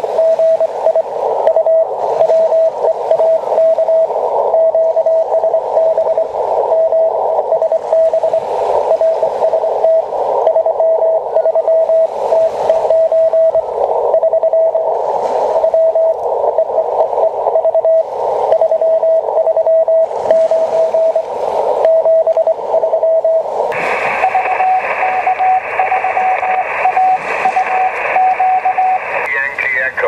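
Morse code (CW) signal heard through a Yaesu FT-817 HF transceiver on the 30-metre band: a keyed tone of steady pitch in dots and dashes over band hiss narrowed by the CW filter. About 24 seconds in it cuts to a wider hiss on the 20-metre sideband band with a broken tone.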